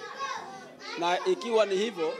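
Speech: a man talking, with a short softer stretch about half a second in.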